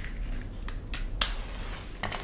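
Hand lighter being struck: a few sharp clicks about a quarter second apart, the last the loudest, as it is worked to light a cigar.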